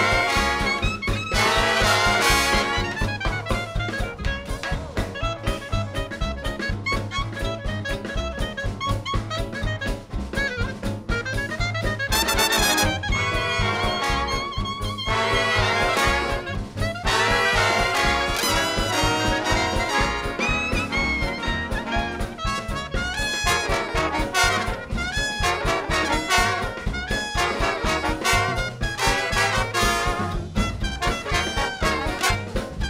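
A swing-era big band playing a 1930s-style number: trumpets, trombones and saxophones over a steady four-beat rhythm section of drums and acoustic rhythm guitar, with a clarinet featured in the middle. A bright, loud ensemble hit comes about twelve seconds in.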